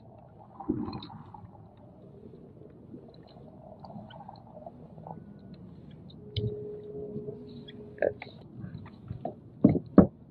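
Low, quiet sloshing of water around a kayak, with a few light knocks and clicks of gear. A faint steady hum runs for about two seconds a little past the middle.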